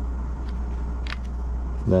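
Steady low hum, with two faint clicks about half a second and a second in as fingers work the switch on a headset microphone's battery power module.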